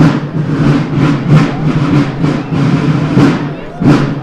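Snare drums playing a fast, driving rhythm, with loud strokes landing every few tenths of a second.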